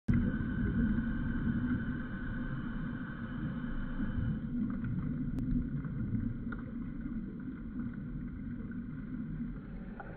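Steady low underwater rumble picked up by a camera in its dive housing, with a couple of faint clicks about halfway through.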